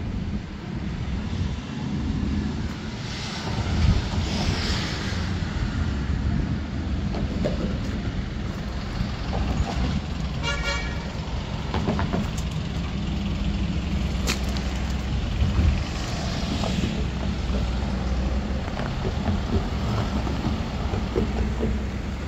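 Street traffic going by with a steady low rumble and passing vehicles swelling now and then. A short vehicle horn toot sounds about ten and a half seconds in.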